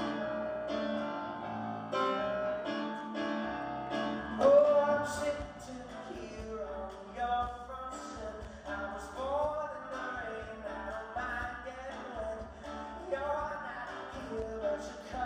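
Grand piano playing a slow pop ballad live, with a man singing over it, his voice strongest from about four and a half seconds in. Heard from the audience in a concert hall.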